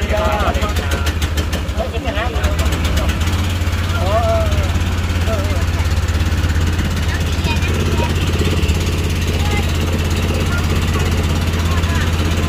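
A wooden river boat's engine running steadily under way, a low, even drone throughout.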